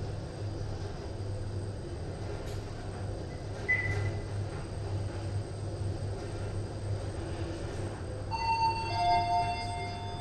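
Toshiba passenger lift car travelling upward, with a steady low hum of the ride and a brief high beep about four seconds in. Near the end a two-tone arrival chime sounds as the car reaches its floor.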